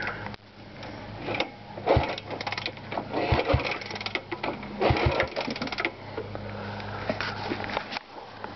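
A 1966 Honda Dream 300's parallel-twin engine being turned over by hand on the kickstarter without starting: three short bursts of rapid mechanical clicking, each about half a second, over a steady low hum.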